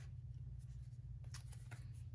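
Faint brushing of fingers sliding over a tarot card and the tabletop, with a few soft scrapes in the second half, over a steady low hum.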